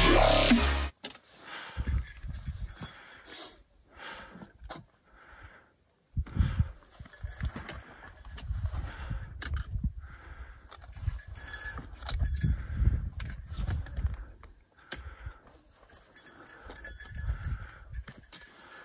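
Background music cuts off about a second in, followed by gusty wind buffeting the microphone, with scattered scrapes and taps of boots and trekking poles on rock as a hiker scrambles up a rock band.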